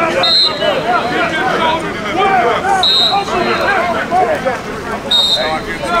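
Several men talking and calling out at once on an outdoor practice field, their chatter overlapping. A short, high steady tone sounds three times, about two and a half seconds apart.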